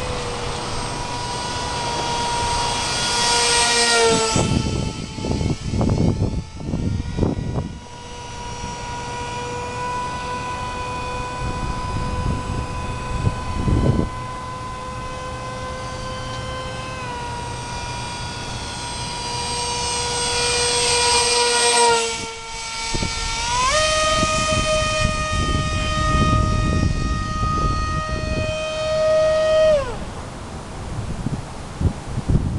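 Electric motor of a scratchbuilt foam RC model XF-108 Rapier in flight, a steady whine whose pitch steps up and down with throttle changes, jumping up about twenty-four seconds in and dropping at the very end. It grows louder on passes about four and twenty-one seconds in. Gusts of wind hit the microphone in between.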